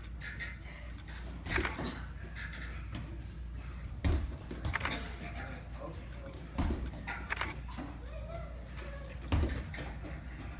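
Irregular sharp thuds, about six in ten seconds, from a martial artist's stances, stamps and kicks on foam floor mats, with faint voices in the room.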